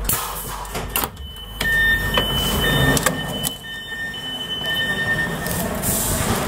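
Mark IV coach's power-operated sliding door with its warning beeper sounding: a high electronic tone, beeping on and off for a few seconds, between sharp clicks and knocks from the door mechanism.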